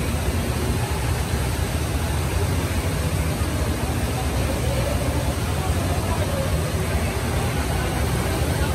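Steady rushing noise of water pouring off a water slide's run-out into an indoor pool, heavy in the low end and unbroken throughout, with faint distant voices in the hall.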